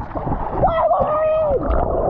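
Pool water splashing at the surface under a person's drawn-out vocal cry that holds one pitch for about a second, then drops away; near the end the sound turns muffled as the microphone goes underwater.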